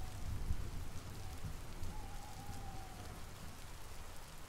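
Steady rainfall: a continuous, even hiss of rain with a low rumble beneath it.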